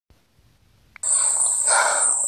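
Opening of a recorded rap track playing back: about a second of near silence, then a click and a loud hiss with a steady high whine that runs on, ahead of the vocals.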